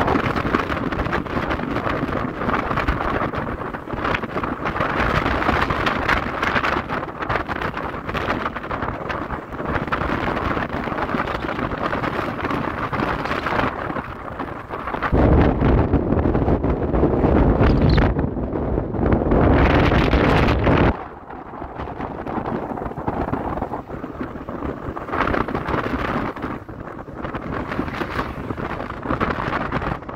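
Wind rushing over the microphone of a rider on an electric scooter moving at road speed. A heavier, deeper buffeting lasts about six seconds in the middle, and the sound eases somewhat afterwards.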